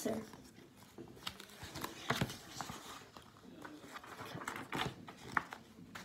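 Quiet handling of a paperback picture book as it is turned around in the hands: soft paper rustling with scattered light clicks and taps.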